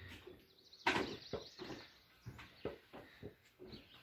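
A series of short, irregular knocks and clicks, about three a second, the loudest a sharp knock about a second in.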